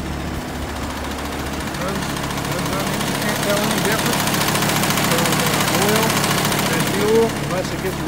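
Mercedes-Benz diesel engine idling steadily while burning a blend of mostly used motor oil and diesel fuel. It grows louder from about two seconds in as the open engine bay comes close.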